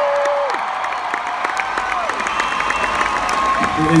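A large arena crowd cheering and clapping, with drawn-out high screams rising above the applause.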